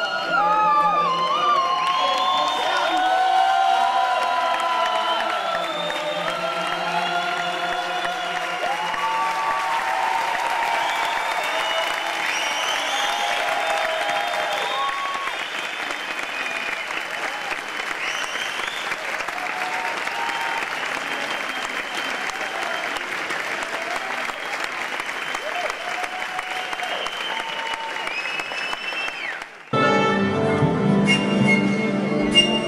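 Theatre audience applauding and cheering, with many shouts and cries rising over dense, steady clapping. It cuts off abruptly just before the end.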